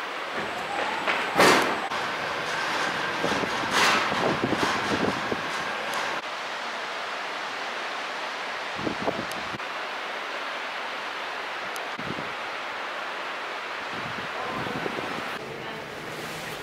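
Steady rushing ride noise of an aerial cable car cabin in motion, with two sharp knocks in the first four seconds and a few lighter ones later.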